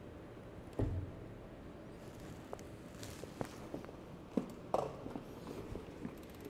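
A Gates Carbon Drive bicycle belt is plucked by hand about a second in, giving a short low thump. The belt's vibration reads 45 Hz on a tension app, a little on the high side. Faint taps and clicks follow.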